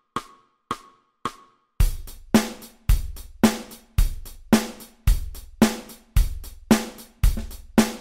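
Backing track for a children's chant: four clicks as a count-in, then a drum-kit beat of bass drum and snare with hi-hat and cymbal, about two beats a second, starting just under two seconds in.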